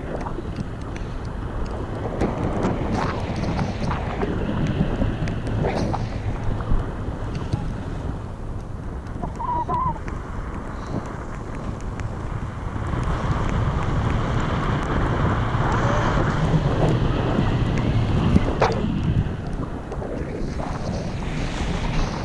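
Airflow buffeting the microphone of a camera carried on a paraglider in flight: a steady rush of wind noise with scattered light knocks, growing louder for several seconds in the second half.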